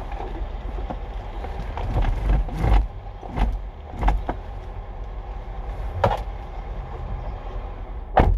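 Steady low rumble inside a parked car's cabin, broken by a handful of sharp knocks and clicks.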